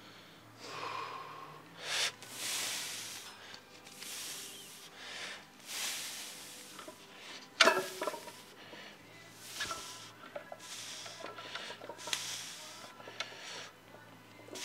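A weightlifter breathing hard and noisily in and out, a forceful breath every second or two, as he braces to deadlift a loaded barbell. One sharp knock comes about halfway through.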